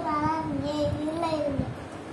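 A young child's voice in a drawn-out, sing-song chant of long held tones, breaking off about one and a half seconds in.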